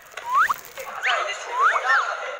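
Several short, sharp rising squeaks of shoe soles on a smooth studio floor as someone dances.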